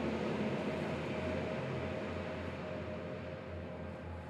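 Steady background ambience: a low hum and hiss with a faint held tone, easing off slightly toward the end.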